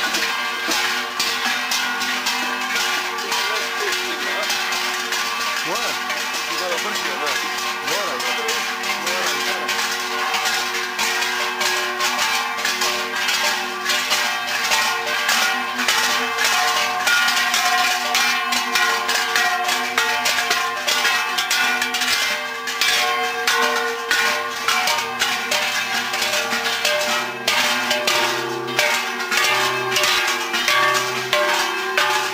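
Metal bells worn by walking maskers, clanking and jangling without a break, with sustained ringing tones under the rapid clatter.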